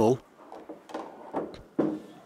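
Pool balls knocking during a shot in which an object ball is pocketed: a few light clicks, then a sharper, louder knock near the end.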